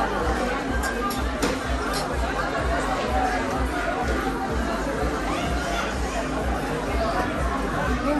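Restaurant background: music with a steady bass beat under the chatter of other diners.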